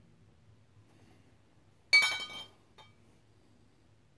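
A glass beer bottle clinks once against other glass bottles about halfway through, with a short ringing, followed by a faint tick.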